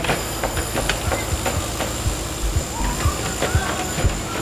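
Construction-site machinery noise from a working excavator: a dense mechanical din with irregular metal clanks and knocks, low thumps and a few short squeaks.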